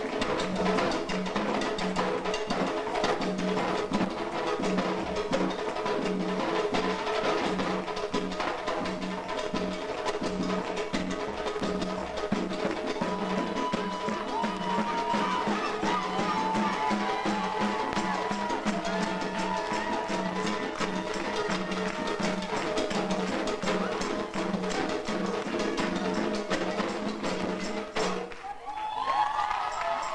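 Live Haitian Vodou drumming: a drum ensemble playing a dense, driving pattern of hand-drum strokes over a steady held tone, with a rising-and-falling voice over it in the middle. The music breaks off suddenly about two seconds before the end.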